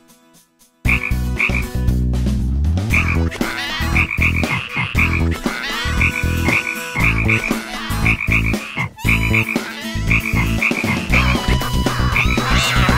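Cartoon frog croaking in a fast rhythmic series, low croaks mixed with short higher chirps, starting about a second in after a near-silent pause.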